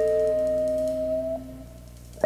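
A live jazz group of piano and guitar holds a chord that fades out, with the top note drifting slightly up in pitch. The notes stop about a second and a half in, leaving a short quiet gap.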